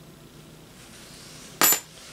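A brass key dropped onto something hard, making a single bright metallic clink with a short ring about one and a half seconds in.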